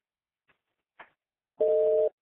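Telephone conference line: two faint clicks, then a steady two-note telephone tone, like a busy signal, starts about one and a half seconds in as the next caller's line is brought into the call.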